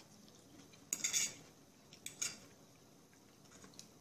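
Metal fork clinking and scraping against a china plate of vegetables: a cluster of clinks about a second in, another just after two seconds, and a few faint ticks near the end.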